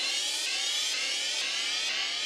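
Software synthesizer sounding its '3rd World Order' patch, a layered crash-cymbal, voices and percussion-loop program: a dense, noisy held note that starts abruptly and sweeps upward in pitch over and over, like a siren.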